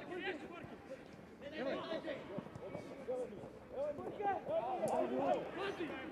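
Speech: a man's voice talking, sparse at first and more continuous from about a second and a half in.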